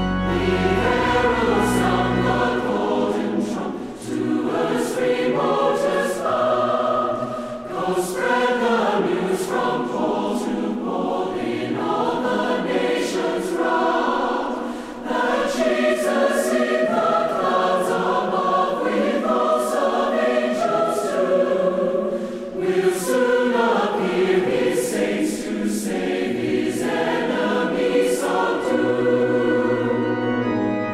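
A choir singing a hymn, several voices together in a continuous passage.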